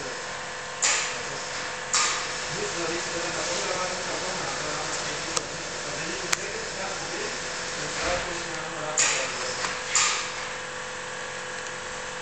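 A seam ripper cutting through the stitching of a soft-top's rear-window seam: four short snips, two about a second apart near the start and two more about a second apart near the end, over a steady low hum.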